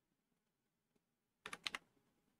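A short burst of several computer keyboard key clicks about one and a half seconds in, typing a digit and pressing Enter; near silence before it.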